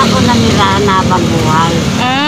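Street traffic: a motor vehicle engine running steadily nearby, with a woman's voice over it.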